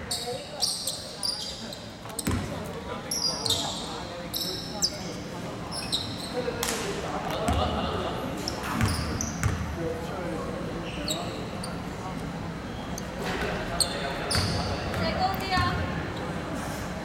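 Basketball bouncing on a hardwood gym floor, with short high squeaks and indistinct voices echoing in a large hall.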